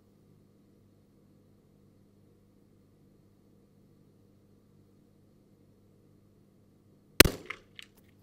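A single shot from a Sako Quad Range .22 LR rifle firing Eley match ammunition, a sharp crack about seven seconds in, followed by a few faint clicks. Before it there is only a faint steady hum.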